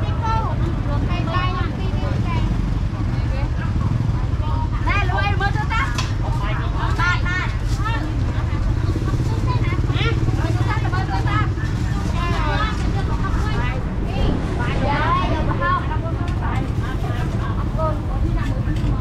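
Busy street-market ambience: people's voices talking close by, on and off, over a steady low rumble of motorbike and road traffic.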